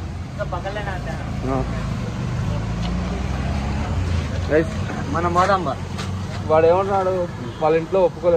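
A steady low motor hum runs under people talking nearby.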